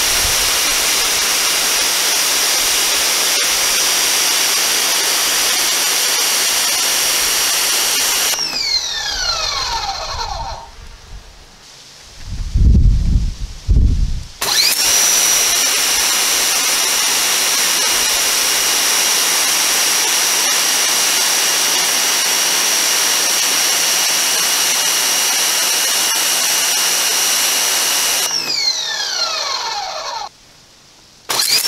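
An 1800-watt electric pressure washer running: the motor and pump whine steadily over the hiss of the water jet striking concrete. About eight seconds in, the trigger is let go and the motor winds down with a falling whine; a few low thumps follow. It then starts again and runs steadily, winding down once more near the end.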